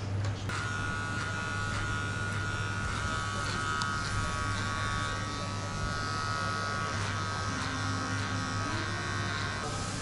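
Electric hair clippers buzzing steadily as they cut hair, starting about half a second in, over a low steady hum.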